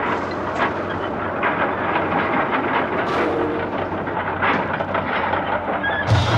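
Continuous clanking and rattling of scrap metal and industrial machinery, a dense clatter of many small knocks over a steady rumble.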